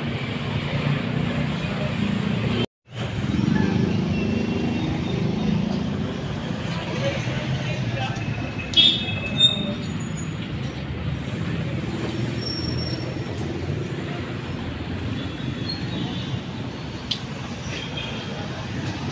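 Outdoor urban ambience: steady traffic noise with faint voices of passersby. It is broken by a brief dropout to silence about three seconds in, and by two short, higher-pitched sounds around nine seconds in.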